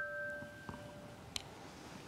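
The last notes of a mallet-struck metal-tube metallophone ring on and fade away over about a second, followed by a faint light click.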